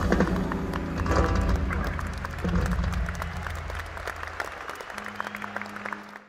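A live band's final chord ringing out and dying away while the audience applauds, the clapping gradually getting quieter. A steady low hum comes in near the end.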